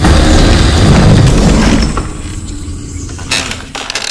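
A trailer sound-effect boom: a loud, deep hit at the start that dies away over about two seconds, followed by a quieter stretch with a short sharp hit near the end.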